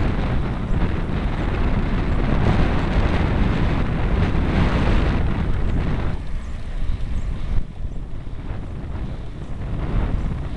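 Wind rushing over the microphone of a camera carried on a moving bicycle, a steady low buffeting roar; it eases about six seconds in.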